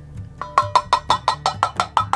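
A measuring cup tapped rapidly against the rim of a stainless steel mixing bowl, knocking out thick ketchup: quick metallic taps, about ten a second, each with a short ring from the bowl, starting about half a second in.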